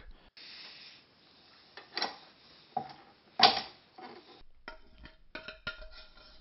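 Metal clatter of a stand mixer being set up with its dough hook: scattered knocks and clinks, the loudest about three and a half seconds in.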